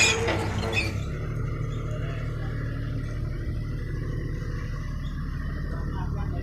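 Small tracked excavator's diesel engine running steadily. A louder, noisier stretch comes in about the first second, then the engine goes on alone.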